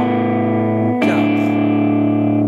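Electric guitar played fingerstyle in a delta blues pattern: a chord rings over a sustained open A bass string, and a new chord is plucked about a second in.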